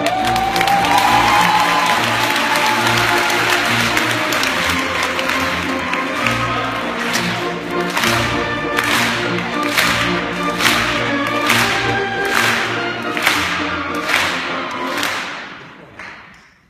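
Symphony orchestra playing in a concert hall, with audience applause over it in the first half. From about halfway there is a run of sharp strikes roughly one a second, and everything fades out just before the end.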